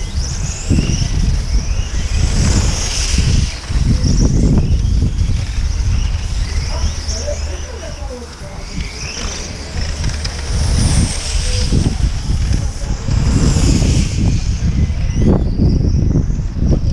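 1/8-scale on-road RC cars running laps, their high-pitched whine repeatedly rising and falling as they accelerate, brake and pass.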